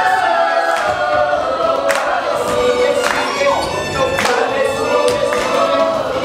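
Stage-musical number: a group of voices singing together over musical accompaniment with a steady beat, about one accented hit a second.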